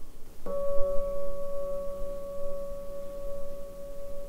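A single struck bell-like tone that starts suddenly about half a second in, then rings on steadily with a few clear pitches, barely fading.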